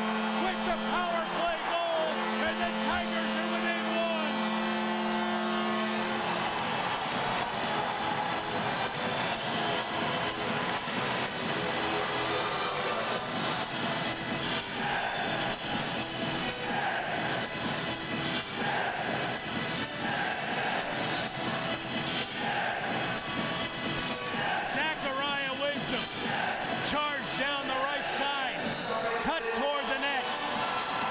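Arena goal horn sounding a steady chord, with a short break about two seconds in, and stopping about six seconds in. After that the crowd keeps cheering while music plays over the arena speakers.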